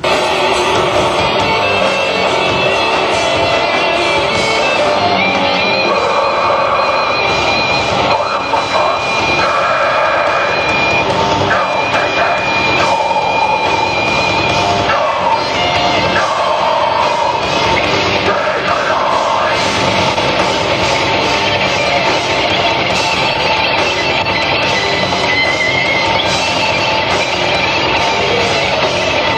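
A rock band playing heavy, loud music with electric guitar and drums.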